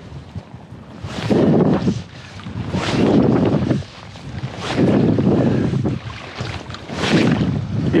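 Wind buffeting the microphone in four rumbling surges about two seconds apart, over the wash of river water.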